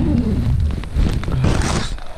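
Rumbling, rustling handling noise on the camera's microphone with scattered clicks as the camera is moved around, and a brief hiss near the end.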